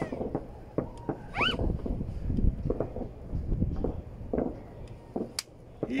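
Distant New Year fireworks: scattered faint pops and crackles, with one sharper crack near the end, over a steady low rumble.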